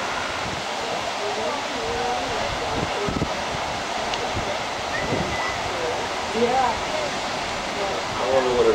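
Steady wash of ocean surf breaking on a beach, with faint, indistinct voices of people in the background.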